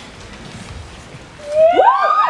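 Low murmur of a theatre audience, then, about a second and a half in, several people in the crowd break into loud overlapping whoops, each cry rising and falling in pitch.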